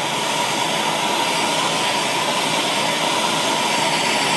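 Handheld propane torch burning steadily, a constant hiss of gas and flame with a faint steady tone running through it.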